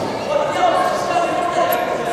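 Voices calling out from ringside, echoing in a large sports hall, with faint thuds of gloved punches among them.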